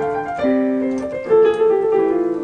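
A recording of a piano playing slow chords, new notes struck about half a second in and again, louder, a little after one second, each left to ring. A steady hissing sound runs underneath: the background noise of the recording.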